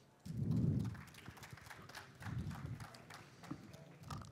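Sparse, quiet clapping from a small audience, a scattering of individual claps rather than a full round of applause, with a low muffled swell of noise near the start.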